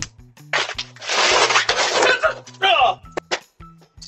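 A man slipping and falling on an icy, snow-covered patio: a rush of scuffling noise lasting about a second and a half, then a short pained cry near the end, over steady background music.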